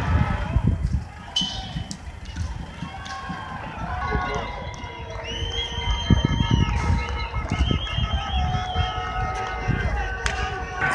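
Distant voices of a protesting crowd shouting, with no clear words, over a low rumble of wind and handling noise on the microphone.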